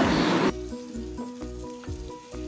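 Onion-tomato masala sizzling in a steel pan as it is stirred, the sizzle dropping away about half a second in. Then soft background music of held notes.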